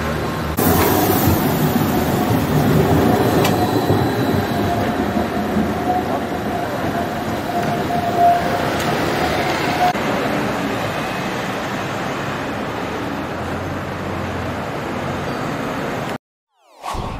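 Tram running along street tracks: a steady rumbling ambience with a held tone in the middle stretch, from about 5 to 10 seconds in.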